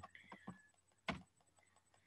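Near silence with a few faint, short clicks; the clearest comes about a second in.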